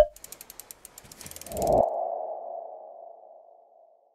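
Logo sting sound effect: a sharp click, then a fast run of ticks for about a second and a half, then a ringing tone like a sonar ping that swells and slowly fades out.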